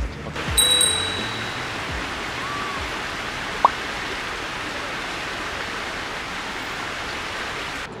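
Steady rush of stream water flowing over rocks. It opens with a short bright chime and the tail of background music, and cuts off abruptly near the end.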